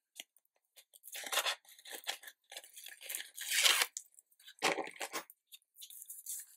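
Backing strip being peeled off double-sided tape on the back of a sheet of patterned paper, in several short pulls with paper rustling; the longest and loudest pull comes a little past halfway.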